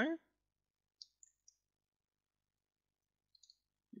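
Computer mouse buttons clicking: three short, faint clicks about a second in and two more near the end, with dead silence between.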